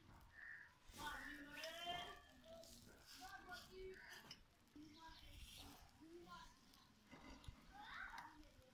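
Faint, distant voices in the background, low in level, with short pitched calls scattered through.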